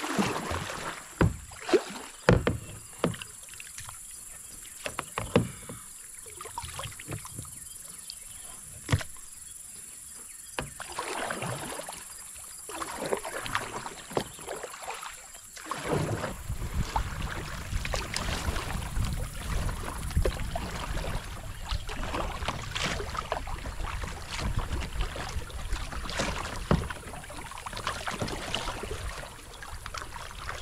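Kayak paddling: double-bladed paddle strokes dipping and splashing in the river, with a few sharp knocks early on. From about halfway a steady low rumble sets in under the strokes.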